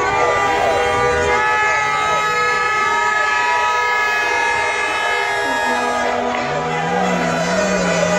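Several horns sounding together in long, steady blasts over a crowd of fans shouting and chanting in the street.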